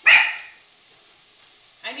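A pet dog barks once, loudly, right at the start.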